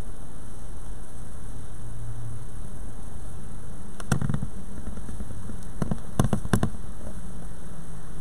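Steady background hiss and low hum in a large church, broken by a knock about four seconds in and a quick run of three or four knocks about two seconds later.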